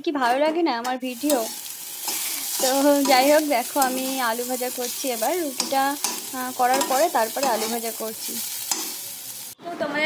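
Potato strips sizzling as they fry in an iron kadai, stirred with a metal spatula, from about a second in until a sudden cut near the end. A woman's voice sounds over it for much of the time.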